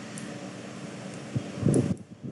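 Steady background hiss with a brief, louder burst of low sound near the end.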